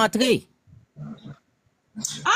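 Speech: a voice saying "non" twice, then a short, quieter voiced sound about a second in.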